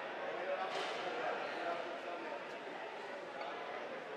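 Indistinct voices over the steady murmur of an arena crowd, with a faint knock under a second in.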